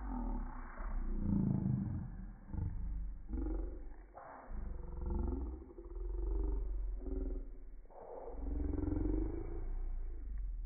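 Voices played back in slow motion, dropped in pitch into deep, drawn-out sounds that rise and fall slowly, several in a row with short gaps, over a steady low hum.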